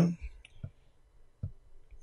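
A man's word trails off, then there is a pause broken by three short, faint clicks: two close together just under a second in, and one more about halfway through.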